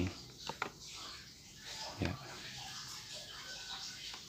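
A precision screwdriver's star (Torx) bit engaging and turning a small screw in a laptop's metal bottom case. The sound is faint throughout, with two small clicks about half a second in.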